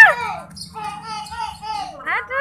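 Children's voices: a loud, high-pitched shout rising and falling right at the start, then quieter, broken children's calls and chatter.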